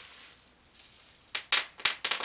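Bubble wrap being popped by hand: three or four sharp, loud pops in quick succession in the second half, after a quieter stretch of handling.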